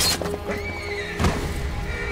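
Battle-scene horse sounds: a horse neighing and hooves over dramatic film music, with a heavy thud just after a second in as a horse and rider go down.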